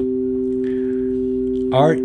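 Two pure sine-wave tones from a synthesizer held together: a steady tone around middle C is joined at the start by a second tone about a fifth higher, and both hold steady. Sounded together, the two pitches are the kind of pair whose difference gives a combination tone, heard by the ear as a third pitch.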